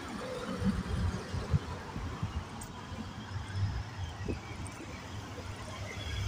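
Street ambience picked up by a hand-held phone while walking: a steady low rumble with irregular soft thumps, and faint passing traffic.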